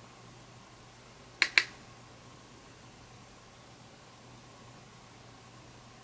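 Two sharp clicks in quick succession about a second and a half in, over a faint steady room hiss.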